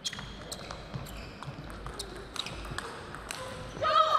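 Plastic table tennis ball clicking sharply off rubber bats and the table in a fast doubles rally, about two or three hits a second.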